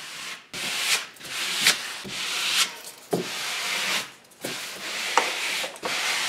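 Glued, crumpled brown paper being rubbed and smoothed flat against a wall with a small card, in about six scraping strokes.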